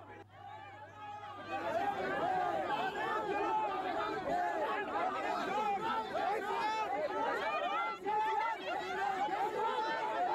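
A dense crowd of many people talking over one another at once, the noise growing louder after about a second and a half.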